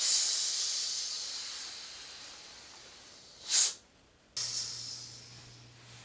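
Hissing breath: a long drawn-out hiss that fades over about three seconds, a short sharp burst of breath about three and a half seconds in, then a second hiss that starts suddenly and fades.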